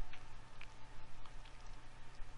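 Faint steady hiss with a low hum and a few soft ticks: room tone in a pause between narration.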